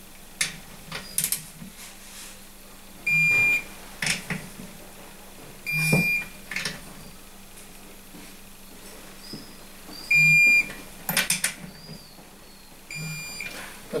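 Digital torque wrench beeping four times, about half a second each, as each cylinder-head nut reaches the set torque of 20 lb-ft. Short clicks and knocks of the wrench on the nuts come between the beeps.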